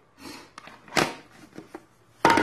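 Hands handling a plastic insulation tester and its snap-on protective cover: a few light knocks and rustles, with one sharp click about a second in.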